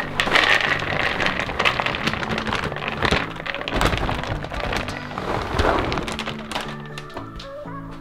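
Pellet litter pouring from a plastic bag into a plastic litter tray, a dense rattle of many small pellets hitting plastic that eases off near the end, over background music.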